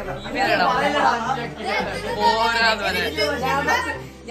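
Several boys chattering and laughing over one another.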